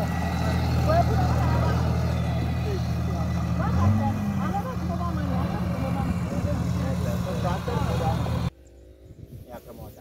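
Farm tractor engine running steadily, briefly rising in pitch about four seconds in, with people talking over it.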